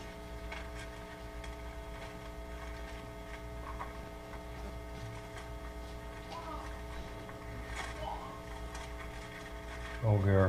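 Steady electrical hum with faint, scattered rustles and ticks of Bible pages being leafed through at a lectern.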